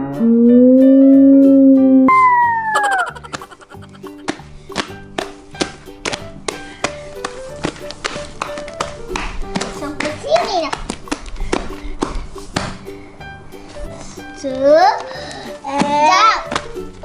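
Background music with children's voices: a long held, voice-like tone at the start, then brief squeals later on. Through the quieter middle, many short sharp clicks and pops come from a large sheet of slime being stretched by hand.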